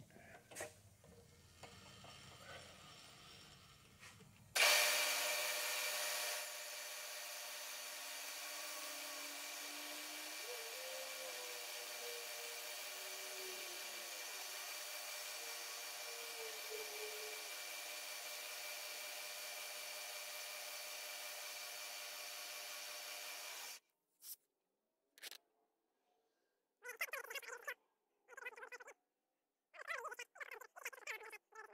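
Milling machine spindle starting up about four and a half seconds in and running steadily with a whine, an end mill taking a light facing cut ('dust cut') across the back of a casting; the machine stops abruptly near the end, leaving near silence with a few short handling sounds.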